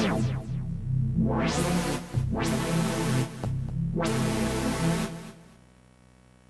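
Electronic synthesizer line from a handheld touchpad synth: low pitched notes whose brightness sweeps up and down several times, opening and closing like a filter. It stops about five seconds in.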